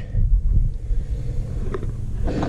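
A low, uneven rumble with no clear pitch, and a faint tick near the end.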